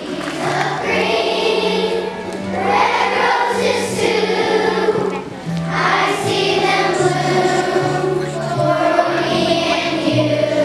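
A children's choir of fourth graders singing together over instrumental accompaniment, with held low notes running under the voices.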